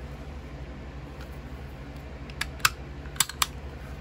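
Makarov pistol's steel slide being worked onto its frame during reassembly, with the trigger guard held down: a handful of light metal clicks, bunched between about two and a half and three and a half seconds in.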